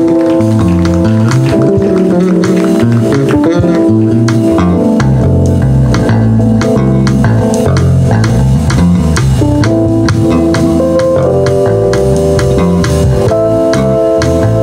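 Live jazz combo playing: electric guitar and bass guitar with a drum kit, over held keyboard chords and a moving bass line.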